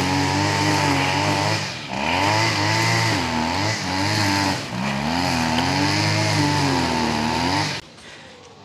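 Petrol string trimmer running under load as it cuts long grass, its engine pitch wavering up and down, with brief dips in revs about two and five seconds in.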